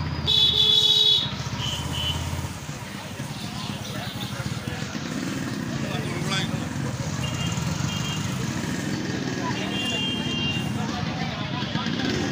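Motorcycle engine running at low street speed through traffic, with a loud vehicle horn honking for about a second near the start and a few shorter, higher-pitched horn toots later on.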